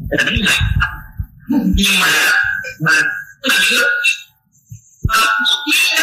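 People's voices and laughter in short bursts, with low knocking in the first second.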